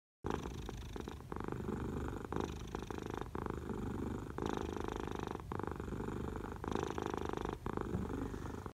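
Domestic cat purring steadily, the purr going in phases of about a second, with a short break between each breath in and out.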